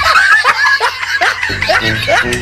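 Laughter in quick repeated bursts over background music, with the music's steady low notes coming back in near the end.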